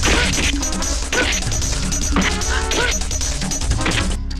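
Fight-scene sound effects: a run of punch and kick impact hits mixed with a man's short pained cries, over loud background music.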